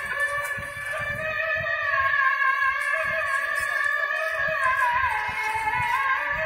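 A muezzin's voice chanting the sela from a mosque minaret's loudspeakers: long held notes with slow wavering ornaments, echoing.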